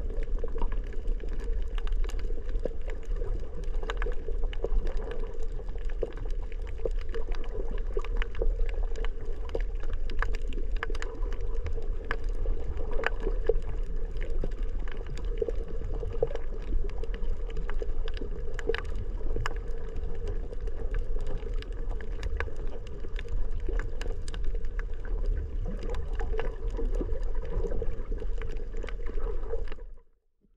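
Underwater ambience on a coral reef, picked up through a GoPro's housing: a steady low rumble of water moving around the camera, with frequent scattered sharp clicks.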